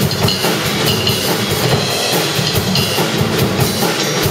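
Live drum-and-bass jam: a Yamaha drum kit played busily, with quick bass-drum, snare and cymbal strokes, over an electric bass line.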